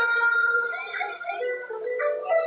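An instrumental passage of a pop song without vocals: a held high note fades about half a second in, followed by a few short notes, with a brief drop in level near the end.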